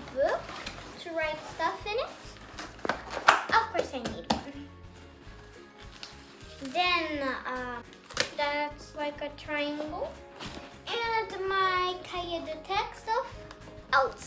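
A young girl's high voice in short phrases over music, with a few sharp clicks and rustles from folders and notebooks being handled about three to four seconds in.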